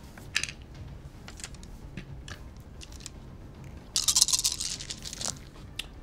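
A handful of ten-sided dice rolled for a skill check: a few soft clicks, then a loud clatter lasting under a second about four seconds in.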